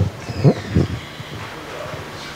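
Handling noise from a handheld microphone as it is passed from one person to another: irregular low bumps and rubbing, loudest about half a second in, with a cough.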